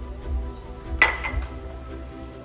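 Background music with a steady beat, and about halfway through a single sharp clink with a short ring, a hard object knocking against a ceramic food bowl.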